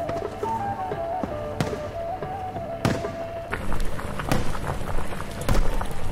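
Background music with a thin wavering melody, over which firecrackers go off in sharp bangs, a couple in the first half and more often in the second half.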